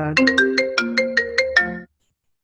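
Phone ringtone interrupting the conversation: a quick melody of about ten chiming notes that cuts off abruptly.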